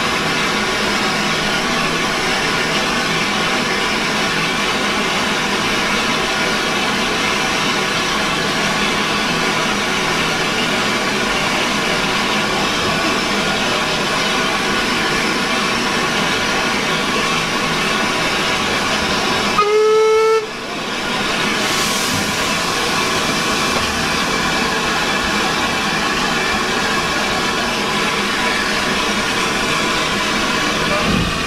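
Austerity 0-6-0 saddle tank locomotive giving one short whistle, rising slightly in pitch, about two-thirds of the way through, over a steady hiss of steam from the standing engine.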